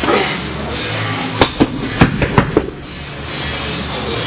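Background music with a steady beat. About a second and a half in comes a quick run of about six sharp knocks over roughly a second, heavy dumbbells hitting the floor and bouncing at the end of the set.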